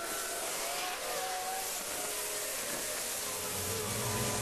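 Road traffic on a busy dual carriageway: a steady rush of passing cars and tyre noise, with faint engine notes sliding in pitch. Music comes back in near the end.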